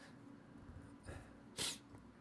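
Quiet room tone broken once, about a second and a half in, by a short, sharp sniff or breath through the nose.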